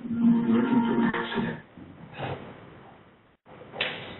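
A person's voice holding one long, steady tone for about a second and a half, heard over a narrow-band conference-call line. Fainter line noise follows, with a brief cut-out near the end.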